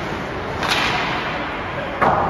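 A single sharp smack from the hockey play on the ice about two-thirds of a second in, such as a stick striking the puck, with a short echo through the rink. It sits over a steady rink background noise.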